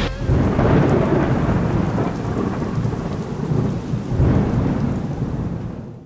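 Steady rain with thunder, swelling about four seconds in and fading out at the end.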